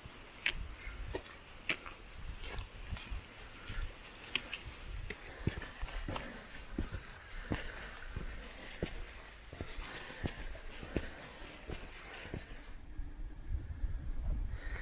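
Footsteps of a person walking uphill on a gravel path at a steady pace of a little under two steps a second, over a low rumble. The steps stop near the end.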